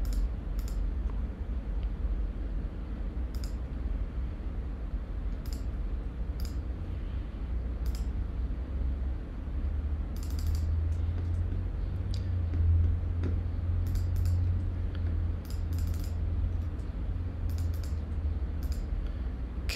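Scattered single computer mouse and keyboard clicks, a dozen or so spread over the stretch, over a steady low hum that grows louder about halfway through.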